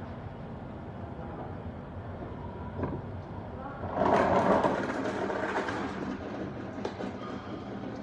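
Countertop blender running, crushing ice and strawberries for a thick protein shake, with a steady rattling churn. It grows louder and fuller about four seconds in, then settles back.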